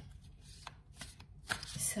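A deck of cards being handled and shuffled by hand, with a few soft flicks and taps; a woman's voice starts in just at the end.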